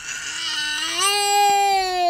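A toddler crying: one long wail that steps up in pitch about a second in and is held.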